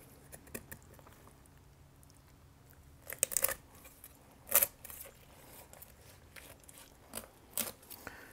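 Chef's knife cutting down through the back of a raw brined turkey: a few short crunches and tearing sounds of blade through skin and bone, with quiet between, the clearest about three seconds in and again about halfway through.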